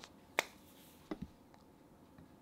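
A sharp click about half a second in, then two softer clicks close together a little after a second, in a quiet room.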